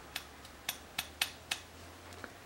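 Five light, sharp taps of a small metal spoon, knocking fine gold powder out onto a paper on a digital scale.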